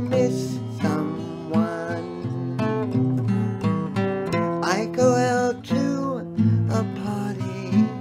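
Acoustic guitar strummed as the accompaniment to a slow country song, chords over a steady bass line.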